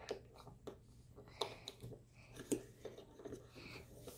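Small plastic parts of a Kinder Joy toy figure clicking and tapping as they are pressed together by hand: a scatter of faint light clicks, the sharpest about two and a half seconds in.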